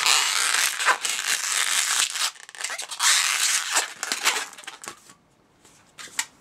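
Latex twisting balloon rubbing against the hands as a bubble is pulled up and twisted into an ear, in two stretches of a couple of seconds each, going quiet near the end.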